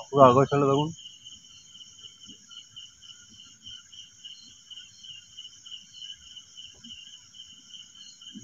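A night insect chorus of crickets trilling steadily: a pulsing trill over a higher continuous one, with faint low rustles underneath. A short spoken word comes at the very start.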